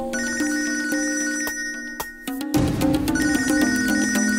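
Mobile phone ringing with a musical ringtone: a melody with a fast warbling high note, which stops briefly about two seconds in and then starts again.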